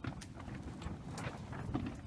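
Light, irregular crackling and rustling of dry straw mulch and soil as a hand brushes through it.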